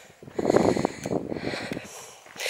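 A person's breath close to the microphone: one rough exhale of about a second and a half, between spoken phrases.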